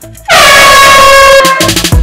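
A loud horn-blast sound effect, held for about a second and dipping slightly in pitch as it starts, opening an intro music sting that comes in with a beat near the end.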